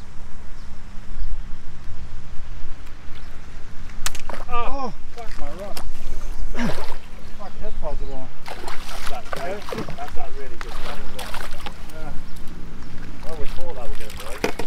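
A big hooked fish splashing and thrashing at the lake surface as it is played in and netted, with excited shouts and laughter from the anglers over a steady low hum. A sharp click sounds about four seconds in.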